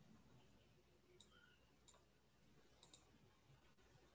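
Near silence, broken by a few faint clicks: one about a second in, another just before two seconds, and a quick pair near three seconds.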